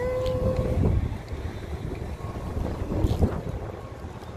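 Wind buffeting a handheld phone's microphone: an uneven low rumble that rises and falls. A short held voice sound comes in the first second.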